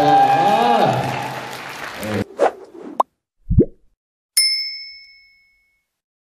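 Logo sting sound effect: a couple of quick swooshes, a short deep thud, then a bright bell-like ding that rings and fades over about a second. Before it, voices in the hall, cut off abruptly about two seconds in.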